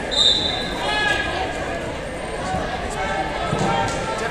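A referee's whistle blows once, briefly, right at the start, sending the wrestlers off from the referee's position. People shout from about a second in, and there is a thump near the end.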